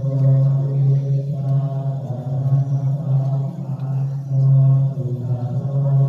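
Thai Buddhist chanting, recited on one steady low pitch with brief pauses between phrases.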